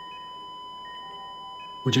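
Soft background music bed under the drama: steady held tones with a few faint, sparse high chime notes. A man's voice comes in near the end.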